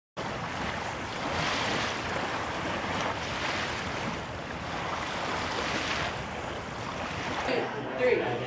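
Waves washing in, a steady rush of surf that swells every couple of seconds.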